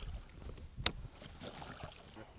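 Faint low rumble and small knocks of handling inside a fishing boat on the water, with one sharp click a little under a second in.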